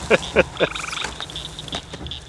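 A frog's short pulsing trill rings out about half a second in, over a steady night chorus at the pond. A few short vocal bursts sound near the start.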